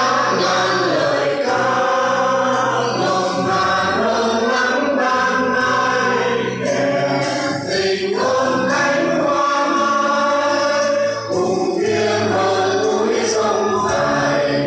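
A mixed group of men and women singing a song together in chorus, phrase after phrase, with brief breaks between phrases.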